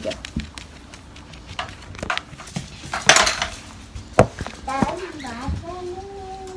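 Scattered light clicks and knocks of handling, with a brief rustle about three seconds in and a sharper click just after four seconds, as a small dog in a diaper moves on a wooden floor and the phone is picked up. A short hum of a woman's voice near the end.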